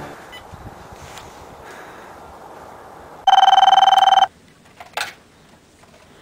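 Landline telephone ringing once: a single ring about a second long, starting about three seconds in.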